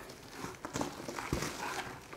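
Loose potting soil crumbling and rustling, with a few light knocks, as a palm's root ball that has just come free of its pot is handled.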